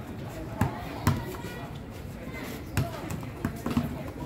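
A ball bouncing on hard paving: about five thuds at uneven intervals, the loudest about a second in, with children's voices behind.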